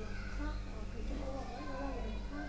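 Quiet voices talking in the background over a steady low electrical hum.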